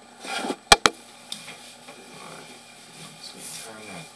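Two sharp clicks in quick succession about a second in, over faint handling noise and low murmured voices.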